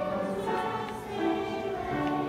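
Children's choir singing together, holding sustained notes that move from pitch to pitch about every half second.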